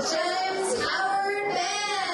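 A woman singing long, gliding notes into a microphone, the voice standing out clearly with little accompaniment heard under it.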